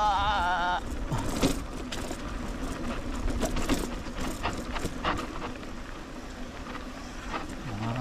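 Mountain bike rolling down a rough dirt trail: a steady low rumble with frequent short clicks and rattles from the bike over bumps.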